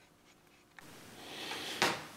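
Dead silence at an edit in the recording, then a faint hiss of a man drawing breath, rising for about a second and ending in a short click just before he speaks.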